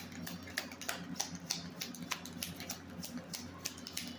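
Deck of tarot or oracle cards being shuffled by hand: a quick, irregular run of light card clicks and flicks, several a second, over a faint steady low hum.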